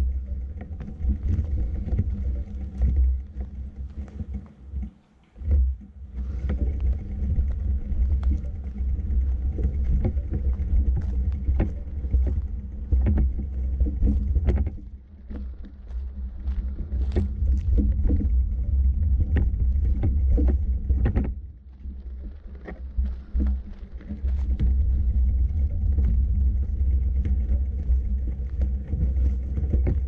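Low wind rumble buffeting the microphone of a camera carried along a forest dirt path, dropping away briefly a few times, with irregular crunching footsteps and twig snaps underfoot.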